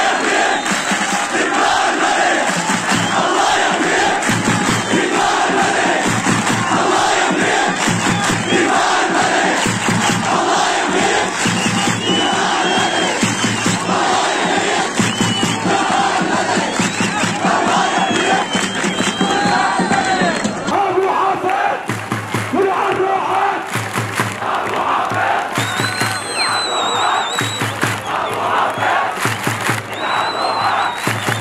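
A large crowd of demonstrators shouting together, a loud, unbroken mass of voices. About two-thirds of the way through, it cuts to a different crowd recording.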